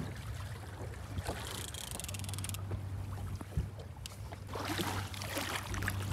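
Water slapping and sloshing against the side of a small fishing boat, over a steady low hum.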